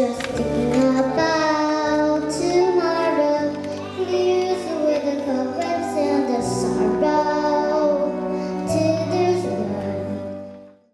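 A young girl singing into a handheld microphone over an instrumental backing track, her voice amplified through a sound system. The accompaniment's low notes change about six and a half seconds in and again near nine seconds.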